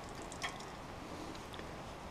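Faint water trickling from a sawmill blade-lube line with its valve wide open, with a small click about half a second in.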